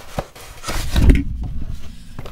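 Desk-top handling noise: a short click near the start, then a loud dull knock with rustling about a second in as the planner and things on the desk are knocked about.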